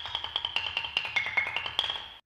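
Skrabalai, a Lithuanian folk instrument of wooden bells hung in rows on a frame, struck in a fast, dense run of pitched wooden knocks.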